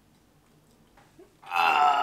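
Near silence, then about a second and a half in, a sudden loud gagging vocal noise from a person reacting to a bad-tasting mouthful.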